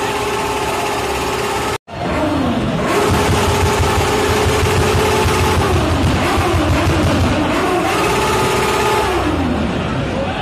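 Car engine revved and held at a steady high pitch for a few seconds at a time, then falling away as the throttle is released, about three times, over crowd noise. The sound cuts out for a moment just before two seconds in.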